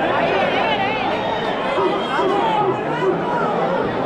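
Large street crowd chattering, many voices talking over one another at a steady level.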